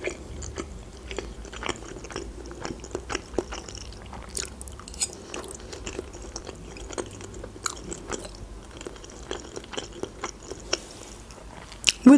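Close-miked chewing of soft boiled pelmeni dumplings in cheese sauce: a run of small, irregular wet mouth clicks.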